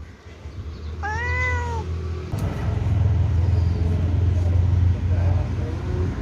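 A cat meows once, a single call that rises and then falls in pitch, about a second in. From about two seconds in, a steady low rumble of street traffic takes over.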